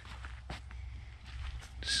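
Footsteps through dry, matted grass and forest litter, faint rustling steps with a steady low rumble underneath.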